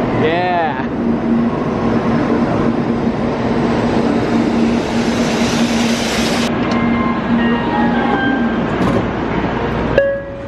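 Shinkansen bullet train pulling into the platform: a loud rush of air and rolling noise over a steady low hum, with a brief voice just after the start.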